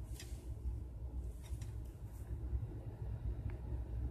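Low, steady background rumble of room noise with a few faint clicks; no distinct sound event.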